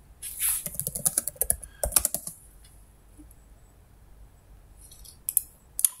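Typing on a computer keyboard: a quick run of keystrokes over the first two seconds, then a pause and a few more clicks near the end.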